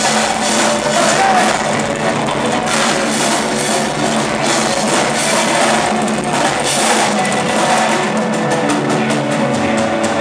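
Live band playing a rock-style pop song, with drum kit and electric guitar to the fore over bass and keyboard.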